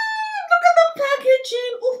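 A woman's long, high-pitched held "ooh" of delight that slides down in pitch, then breaks into repeated short "ooh"s.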